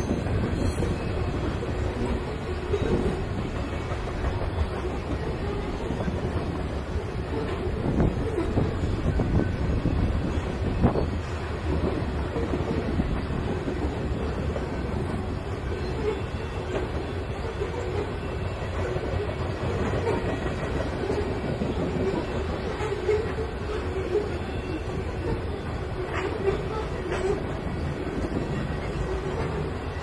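Long freight train of covered hopper cars rolling past: a steady rumble of steel wheels on rail, with occasional sharp clicks from the wheels.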